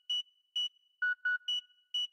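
Sparse electronic synth blips in the intro of an instrumental hip-hop beat: short, clean beeps at two pitches an octave apart, spaced about half a second, with silence in between.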